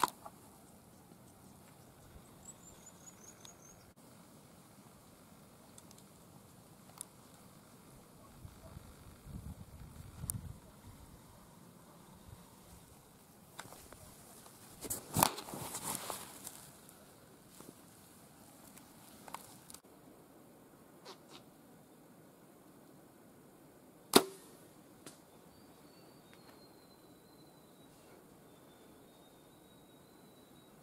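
A compound bow shot once: a single sharp snap of the string and limbs on release, about three-quarters of the way through, with a short ring after it. Earlier, about halfway, there is a brief burst of rustling, and faint high chirps come and go.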